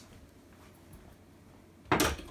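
A quiet room, then one sharp knock or clack near the end, like a hard object set down on a desk.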